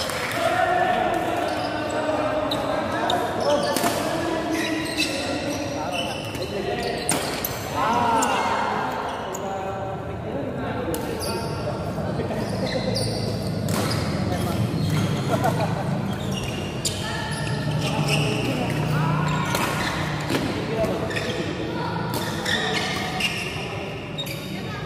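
Badminton rackets striking a shuttlecock during rallies: repeated sharp hits at irregular intervals, echoing in a large hall, over a steady murmur of voices from players on the surrounding courts.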